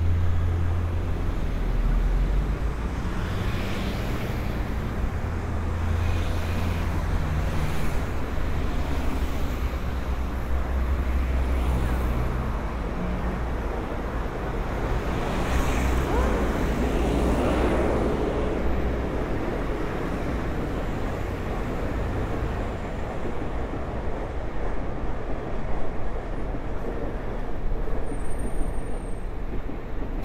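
Road traffic at an intersection: a steady rumble of vehicle engines, with a box truck driving past about halfway through, its engine and tyre noise swelling and fading over a couple of seconds.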